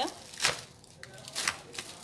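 A plastic bag of damp sand rustling as the sand is tipped into a plastic planter box, with two short crinkling rustles about half a second and a second and a half in.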